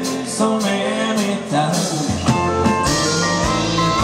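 A live band playing a dance song: male lead vocal over acoustic guitar, keyboard, electric guitar and drums.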